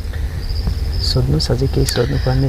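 Insects trilling in the background, a thin high steady tone that comes and goes, over a low steady hum; a voice starts speaking a little over a second in.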